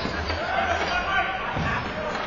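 Indistinct calls and shouts from players and people at the rink, echoing in a large indoor arena, with a sharp knock at the start and a dull thud near the end from play on the rink.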